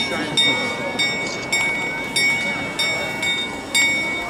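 The Prague Astronomical Clock's bell being struck over and over, about once every two-thirds of a second, each strike ringing on into the next, over the murmur of a crowd.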